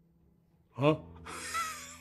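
A man says a short "huh?", then lets out a breathy, voiceless laugh through the mouth, starting about a second in.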